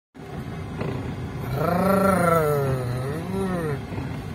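A person's voice giving one long, drawn-out wordless call that rises and falls in pitch twice, over the steady rumble of a car driving slowly on a rough dirt track, heard from inside the cabin.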